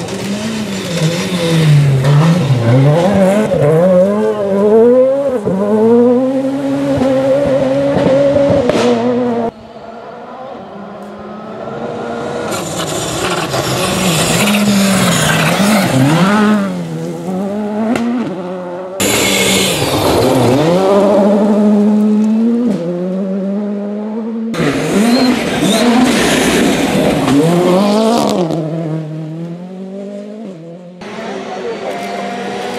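Rally cars passing at speed on a gravel stage, one after another, among them a Skoda Fabia R5. The engines rise and drop sharply with gear changes and throttle lifts, with gravel spraying from the tyres. The passes are joined by abrupt cuts.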